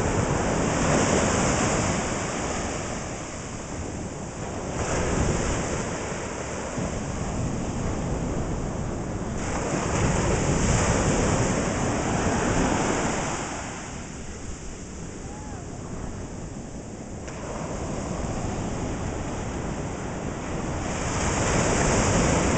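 Ocean surf washing onto the beach, swelling and easing every few seconds, with wind buffeting the microphone.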